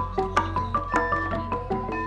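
Javanese gamelan music: a fast run of struck metallophone notes with sharp percussive strokes over a sustained low tone.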